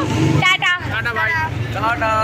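Speech: people talking close to the microphone.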